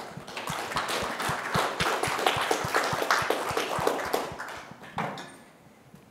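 Audience applauding: many hands clapping in a dense patter that dies away about five seconds in.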